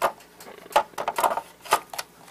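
A Milwaukee M18 HD12.0 battery pack being pushed onto its charger: a handful of short plastic knocks and clicks over two seconds as the pack goes onto the rails and seats.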